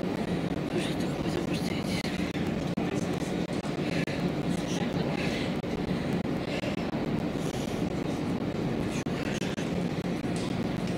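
Arena background of indistinct, distant voices over a steady low hum, with no single distinct event.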